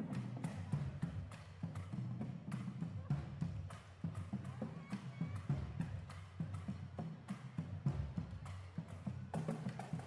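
High school marching drumline playing: snare drums, tenor drums, bass drums and cymbals, with quick sharp stick strokes over steady low bass-drum hits.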